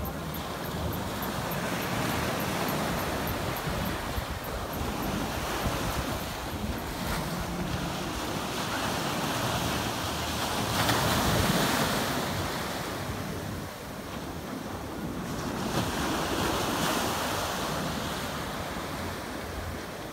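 Sea waves breaking and washing up a sandy beach, with wind buffeting the microphone. The surf swells and ebbs several times and is loudest a little past halfway.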